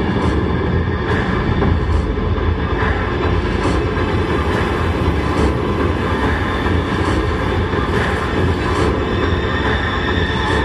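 Film-trailer soundtrack played loud through a cinema's speakers and picked up by a phone: a dense, steady low rumble with a soft pulse a little under once a second.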